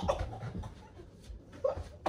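A dog panting on the bed amid a scuffle.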